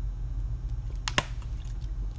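Steady low electrical hum with two sharp clicks a little over a second in.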